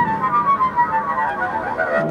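Double bass bowed high up its strings in sliding, wavering notes that sink slowly in pitch, imitating seagull cries.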